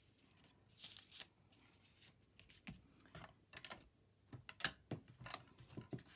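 Faint rustling and light clicks of paper and card being handled and moved on a craft mat, with a cluster of short taps in the second half.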